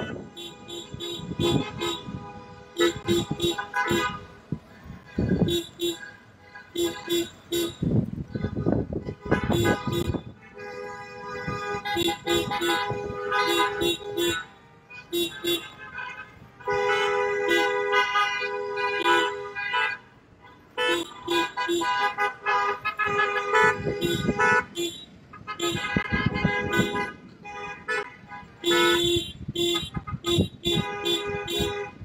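Car horns honking over and over: strings of short toots, with longer held blasts a little past the middle and near the end.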